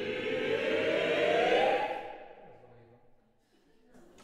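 Mixed SATB choir holding a dense cluster of freely chosen pitches, swelling in loudness, then cutting off about two seconds in; the sound rings on briefly in the hall and dies away.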